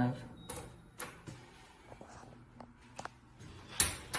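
Elevator car-panel push buttons clicking as they are pressed, several separate clicks with a louder one near the end and a short high beep shortly after the start. The door-close button is being pressed but does not work.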